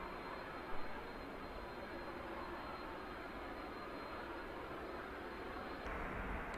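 Faint, steady noise of a Lockheed C-5M Super Galaxy's turbofan engines as the aircraft taxis.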